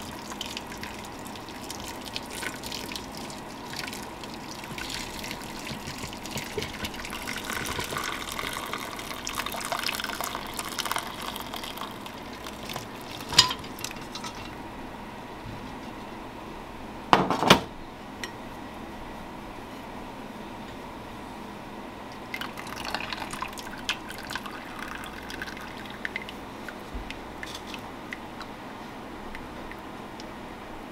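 Hot tea poured from a pot through cheesecloth and a metal strainer into a glass bowl: a steady pour for roughly the first dozen seconds, heaviest about halfway through that stretch, then tapering to dribbles. Two sharp knocks about 13 and 17 seconds in, the second the loudest sound.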